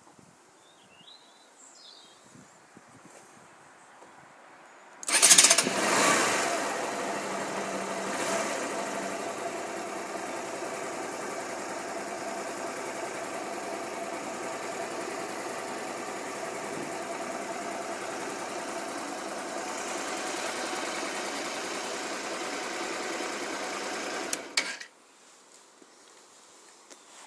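Honda Varadero 125's V-twin four-stroke engine starting about five seconds in, with a brief rise in revs. It then idles steadily for about twenty seconds and stops suddenly near the end.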